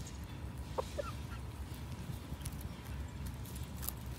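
Chickens pecking at food on gravel, with scattered sharp ticks of beaks on stones and two short, soft clucks about a second in, over a steady low rumble.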